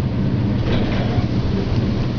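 Steady rumble and rushing air noise inside the car of a 1971-72 Otis gearless traction high-speed elevator as it rides up through the top floors of its run.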